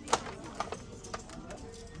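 A few light clicks and taps over quiet shop background noise: one sharp click just after the start, then three fainter ones spaced about half a second apart.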